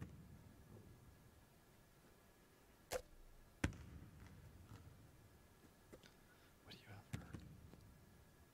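A basketball bouncing on a hardwood gym floor in a large, quiet arena: four separate sharp bounces with a short echo, the two loudest coming a little after three seconds and two more later on.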